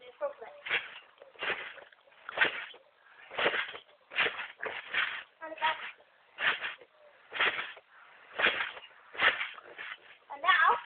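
Garden trampoline being bounced on, its mat and springs sounding with each landing, about once a second in a steady rhythm.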